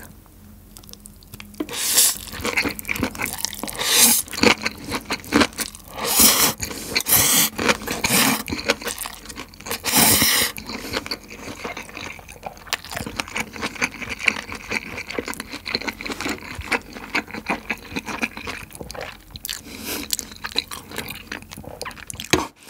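Close-miked chewing of a mouthful of stir-fried ramen noodles with beef and bok choy: wet mouth sounds and clicks, beginning about two seconds in, with several louder bursts in the first half and softer chewing after.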